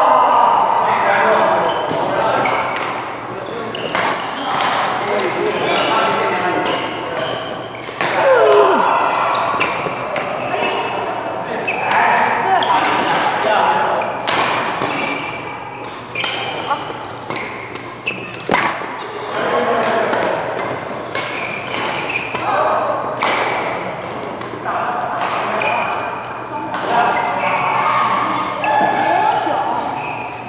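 Badminton rackets hitting a shuttlecock during a doubles rally in a large sports hall: sharp, irregular strikes, sometimes several within a second, mixed with the indistinct voices of players and onlookers.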